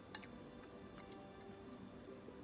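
Metal fork clicking against a china plate as it cuts into a soft cake: one sharp click just after the start and two lighter ones about a second in, over faint background music.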